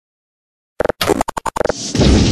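DJ record scratching opening a remix: about eight quick chopped scratch strokes after most of a second of silence, then a swelling whoosh near the end.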